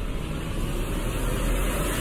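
A deep, steady rumble with a hiss over it: the swelling sound effect of an animated TV-channel logo ident.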